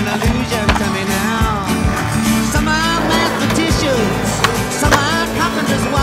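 Music with skateboard sounds mixed over it: a board grinding along a concrete ledge, and several sharp clacks of the board popping and landing.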